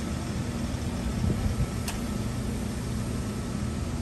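A motor vehicle engine idling, a steady low hum, with one short click about two seconds in.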